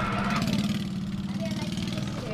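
A small boat engine idling steadily with a low, even hum.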